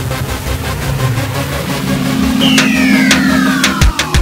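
Electronic intro music with sound effects: a steady low drone, a falling sweep in the second half and a run of sharp hits near the end.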